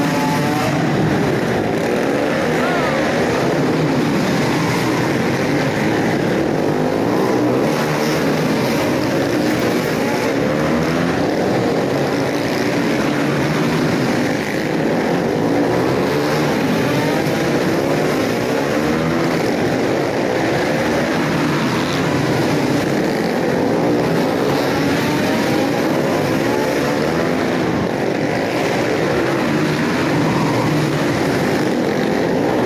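A pack of small dirt-track racing motorcycles running flat out together, their engines revving up and down in many overlapping pitches as they lap a tight oval inside a large arched hall.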